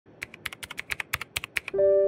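Computer-keyboard typing sound effect: rapid keystroke clicks, about ten a second. About 1.7 seconds in, a louder held musical chord starts.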